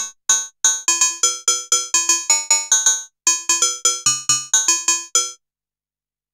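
Korg Monologue monophonic analogue synthesizer playing a metallic, go-go-bell-like percussion patch, frequency-modulated by its audio-rate LFO. It plays a quick rhythmic run of about twenty short struck notes at several pitches, with a brief break around the middle. The notes stop a little before the end.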